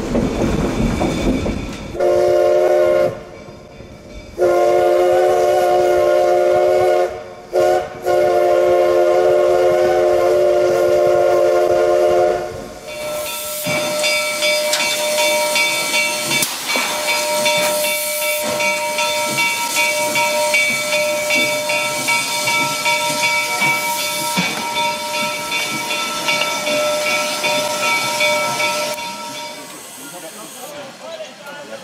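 Steam locomotive's chime whistle, a chord of several notes, blown in a series of blasts: a short one, a longer one, a brief toot, and a last blast of about four seconds. Then the locomotive stands with steam hissing steadily and a faint steady whine over the hiss.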